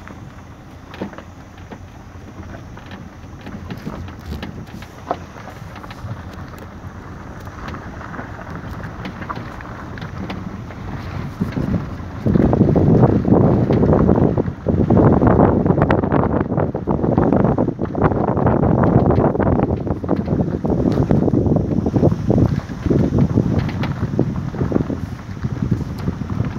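Wind buffeting the phone's microphone in a rough rumble, moderate at first and much louder from about twelve seconds in, rising and falling in gusts.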